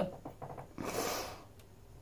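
A short breath through the nose about a second in, a half-second rush of noise, with a few faint clicks before it.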